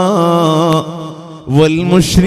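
A man chanting into a microphone, holding long melodic notes with a wavering pitch; the phrase dies away a little under a second in, and a new held phrase begins near the end.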